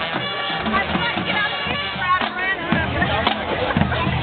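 High school marching band playing its halftime show: held brass chords over drums.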